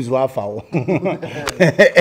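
Men talking and chuckling in conversation, breaking into laughter.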